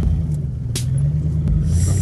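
Ford Expedition's V8 engine rumbling steadily as the SUV drives off through brush on a sand trail, with one sharp click about three-quarters of a second in.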